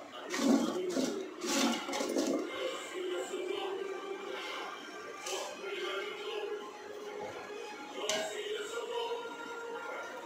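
Chopped raw mango pieces clattering against an aluminium pot as a hand spreads them out, mostly in the first two or three seconds, over steady background music.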